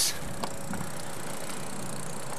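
Steady rushing noise of a road bicycle ride picked up by a handheld camcorder's microphone, with a couple of faint clicks about half a second in.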